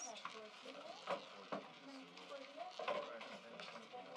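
Faint voices behind a live-dealer roulette wheel spinning, with a few soft clicks.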